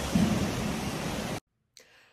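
Steady rushing background noise with a short fragment of a woman's voice just after the start; it cuts off abruptly about two-thirds of the way through, leaving near silence.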